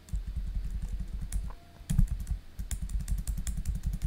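Computer keyboard keys tapped in a fast run of keystrokes, each stroke giving a click with a dull thud. The run pauses briefly about a third of the way in, has one louder stroke at about two seconds, then goes on quickly again, paging a router's command-line output line by line.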